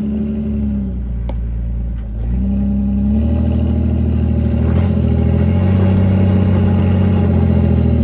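2004 Jeep LJ's 4.0 HO inline-six running at low crawling revs as it climbs a rock ledge. The revs ease off about a second in, then pick up again and hold higher and a little louder under load for the rest of the climb.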